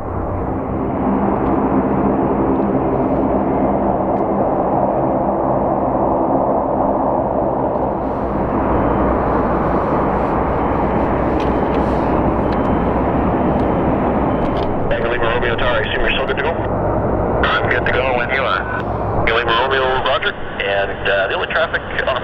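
Aircraft engine roar, steady and loud, growing brighter and hissier about a third of the way in as the aircraft passes. In the last several seconds, radio voices from air traffic control come in over the engine noise.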